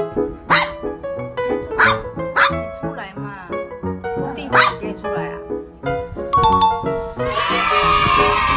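Small Maltese dog giving four short, sharp barks over background piano music. Near the end a longer, louder vocal sound comes in.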